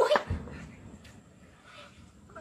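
A single gunshot from a firefight cracks just after the start, followed by a low rolling echo, with a short pitched call overlapping it; the rest is quieter outdoor background.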